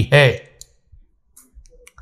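A man's speech ending on a word, then a short pause filled with a few faint mouth clicks and lip smacks picked up close by a lapel microphone.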